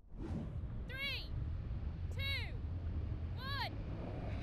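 Three short animal calls about a second and a quarter apart, each rising then falling in pitch, over a low steady rumble.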